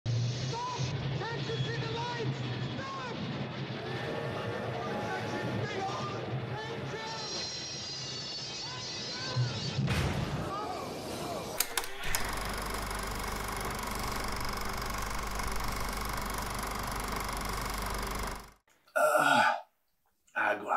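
Film soundtrack with music and voices, then a steady rumbling noise of a steam train running, which cuts off abruptly. A short loud burst of voice follows near the end.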